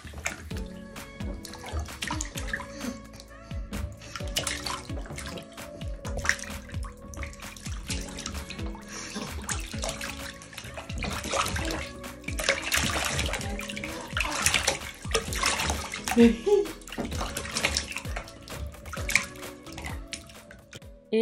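Bath water splashing and lapping as a baby kicks his feet in a small tub, in irregular splashes that grow busier past the middle, over background music.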